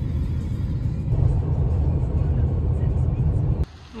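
Steady low rumble of road and engine noise inside a moving car's cabin, cutting off abruptly near the end.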